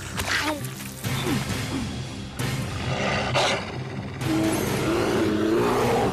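Cartoon background music, with an animated bear roaring from about four seconds in, a long cry that rises a little in pitch.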